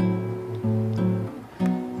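Nylon-string classical guitar playing bossa nova chords, plucked and left to ring, with new chords struck about half a second in and again just past a second and a half after a brief lull.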